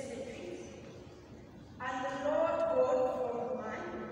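A man's voice speaking: quiet for the first couple of seconds, then a phrase from a little under two seconds in to near the end.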